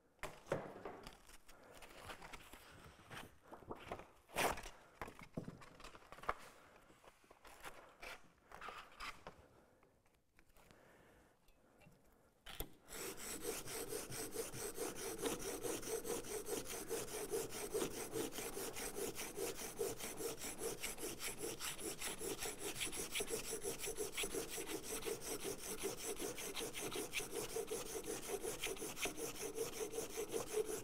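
Scattered clicks and rustles of fresh abrasive paper being handled and laid down for about the first twelve seconds. Then a plane iron is rubbed back and forth on the abrasive paper in rapid, even strokes, grinding nicks out of its cutting edge.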